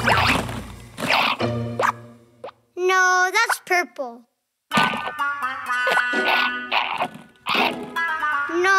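Cartoon soundtrack of sound effects, voice and music. The first two seconds hold a run of short springy impact effects, like bouncing balls. Around three seconds in come high, gliding wordless vocal sounds from a cartoon character, and the second half has children's music with more effect hits.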